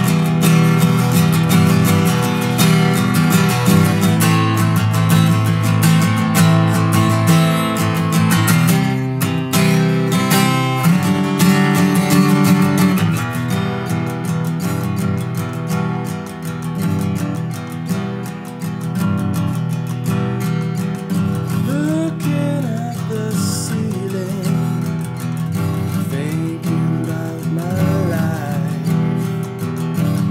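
Acoustic guitar strummed hard and steadily through an instrumental break, easing to softer, sparser playing about a third of the way in.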